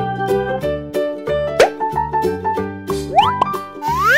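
Cheerful children's background music with a steady, bouncy beat. Short sound effects that rise in pitch come in about a second and a half in and again near the end.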